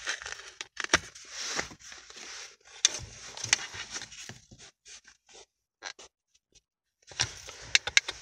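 Paper scratch-off lottery tickets rustling and sliding, with sharp clicks from a clipboard's metal spring clip as one ticket is taken out and the next is clamped in. The handling stops for about a second and a half in the second half, then starts again.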